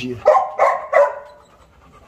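A dog gives three short, high-pitched barks in quick succession within the first second, then falls quiet.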